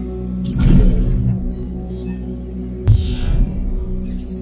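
Logo intro music: a deep, steady droning bass with a whooshing swell about half a second in and a sharp hit just before the three-second mark.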